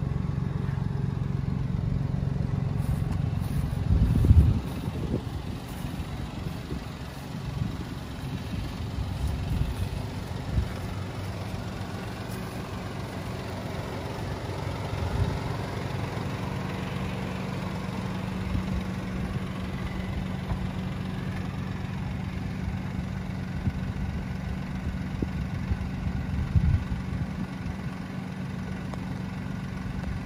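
A parked Mini Cooper Convertible's engine idling with a steady low hum. A low thump comes about four seconds in and a smaller one near the end.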